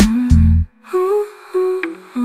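Pop love song with a wordless humming vocal over the backing track. The deep bass stops about half a second in, leaving lighter pitched notes.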